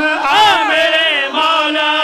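A man's voice chanting a sung recitation phrase, melismatic: a wide swoop up and back down about half a second in, then long held notes that waver in pitch.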